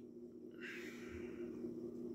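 A man breathing out slowly through his nose, starting about half a second in, over a steady low hum.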